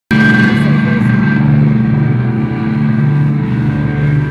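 Electric guitars through stage amplifiers holding a sustained, droning chord, with a high steady feedback tone above it and no drum beats, as a live rock song opens.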